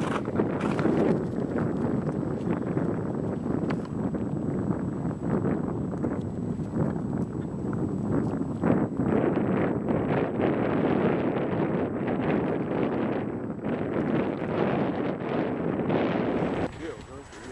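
Wind noise on the microphone, a steady rushing that rises and falls slightly in gusts.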